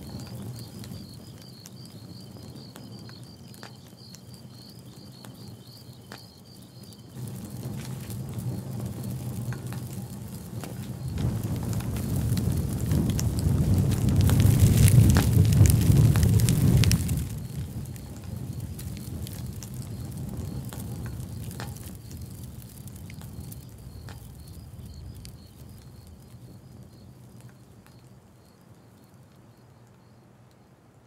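Fire burning a paper offering in a metal barrel: crackling and rushing that swells to a loud peak around the middle and cuts off suddenly, then a quieter crackle that fades away. A faint high pulsing chirr runs under the quieter stretches.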